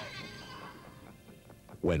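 Film soundtrack dying away: a fading tail of music and sound effects with a brief call-like sound. A man's voice starts speaking near the end.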